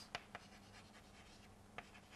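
Faint chalk writing on a blackboard: light scratching with a few small taps as a word is written.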